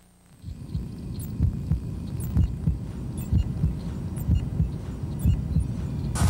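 Heartbeat sound effect opening a movie trailer: low, thudding pulses about once a second, each strong beat with a weaker one beside it. It rises out of near silence within the first half-second.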